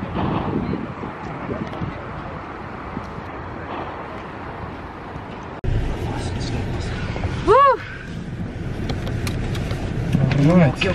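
Steady outdoor background noise for about the first five and a half seconds, then a sudden switch to the louder, steady noise inside a car's cabin. Near the middle of the cabin noise there is one short hummed voice sound that rises and falls in pitch.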